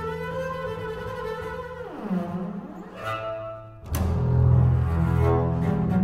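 Solo double bass played with the bow: a held note, then a downward slide about two seconds in and a quieter passage, followed by a sudden, loud accented low note near four seconds that rings on.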